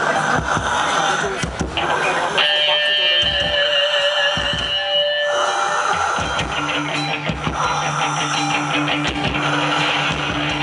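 Live rock band with amplified electric guitars, bass and drums playing loudly, drum hits under held notes: a high sustained note a couple of seconds in, then a low held note in the second half.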